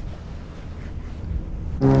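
Low, steady wind rumble, then near the end the loud, steady drone of a propeller plane overhead starts abruptly.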